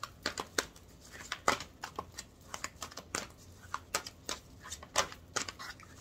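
A deck of tarot cards being shuffled by hand: irregular short flicks and snaps of the cards, several a second.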